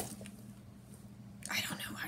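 A pause in a woman's talk: quiet room tone with a faint steady low hum, then her voice starts again in the last half second.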